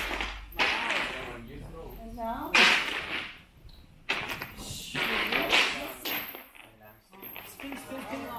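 A large heavy fabric skirt swishing through the air as it is swung, three loud whooshes about two seconds apart, with faint voices between them.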